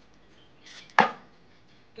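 A brief swish of water, then one sharp, loud knock about a second in, as green bananas are handled and peeled in a bowl of water.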